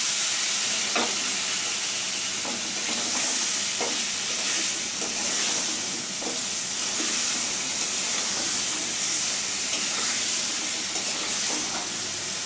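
Pumpkin pieces sizzling in hot oil and spice paste in a metal karahi, a steady frying hiss, with the metal spatula scraping and knocking against the pan every second or two as they are stirred.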